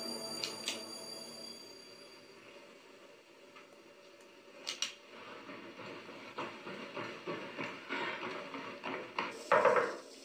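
Horror-film soundtrack: music fades away early on into a hush broken by a couple of sharp clicks, then a growing run of short knocks and clatter with a loud burst near the end.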